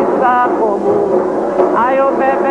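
Singing voices in a chant, holding notes that glide up and down.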